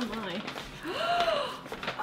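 A woman's soft gasp and murmured voice, with faint rustling of paper packaging being pulled open.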